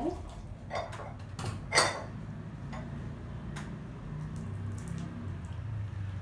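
Porcelain teaware being handled: a few separate sharp clinks and knocks, the loudest just under two seconds in.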